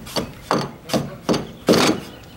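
A long-handled mixing tool scraping through dry sand and rendering cement in a mortar tub, in about four strokes roughly two a second, blending the dry mix before water is added.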